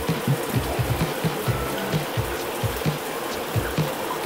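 Shower head running, spraying water steadily against the tub surround, with background music playing under it.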